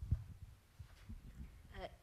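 Soft, irregular low thumps and rumble, typical of handling noise on a handheld microphone. A voice starts briefly near the end.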